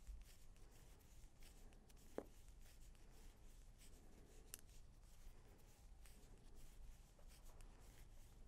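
Near silence with faint clicks and rustles of bamboo knitting needles and bulky wool yarn being worked stitch by stitch, with one sharper click about two seconds in.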